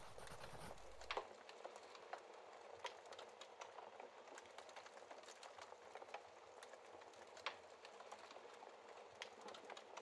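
Faint wood fire crackling in a fireplace: a soft steady hiss with scattered snaps and pops, the sharpest about a second in and again past the middle. A low rumble underneath stops about a second in.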